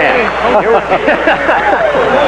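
Men talking: the voices of television play-by-play commentators, with no other sound standing out.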